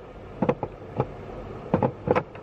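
A Type 2 charging cable's connector being pushed into a public charge point's socket: a handful of short plastic knocks and clicks about half a second in, at one second and near the end, over a steady low background rumble.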